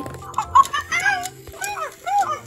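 Fingerlings baby monkey toy (Charli) giving short, high electronic chirps and babble, over background music. A few sharp clicks come near the start.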